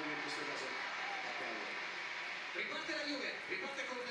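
Faint male speech in the background, much quieter than the talk just before and after.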